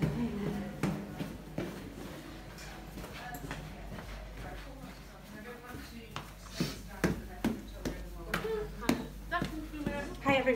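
Footsteps going down a flight of stairs: a series of uneven knocks, with the murmur of several people's voices getting louder near the end.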